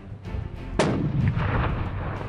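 A single rifle shot about a second in, one sharp crack followed by a long rolling tail that dies away over about a second.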